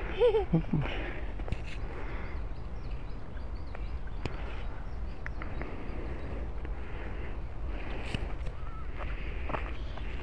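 Quiet outdoor background: a child's brief voice right at the start, then a steady low rumble with faint high bird chirps for a few seconds and a few light clicks.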